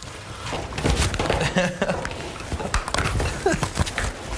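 Indistinct voices of several people talking in a room, mixed with scattered short knocks and clicks.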